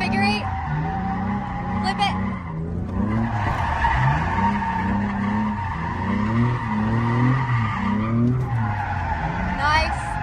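Automatic Nissan 350Z's V6 engine revving up and down over and over as the car drifts through a figure eight and donut, with tyres squealing and skidding on the pavement, heard from inside the cabin.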